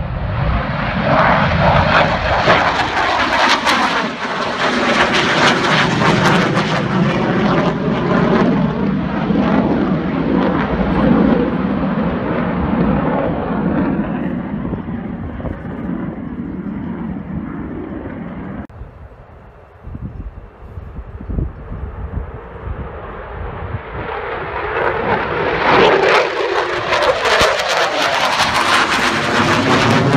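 Military fighter jets flying low overhead, one after another. The loud jet engine noise of the first swells and then fades away over the first half. After a sudden dip, a second jet's noise builds again toward the end, with a sweeping, phasing sound as it passes close.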